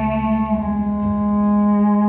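Live music: a male voice holds one long, steady sung note over acoustic guitar.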